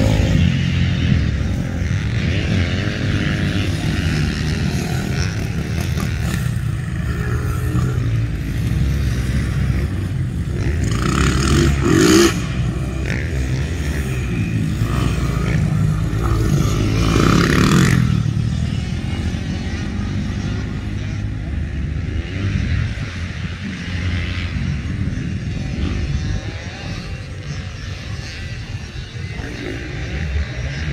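Dirt bike engines running and revving as the bikes ride the track, the sound rising and falling as they pass. Loudest about twelve seconds in and again around eighteen seconds, then quieter near the end.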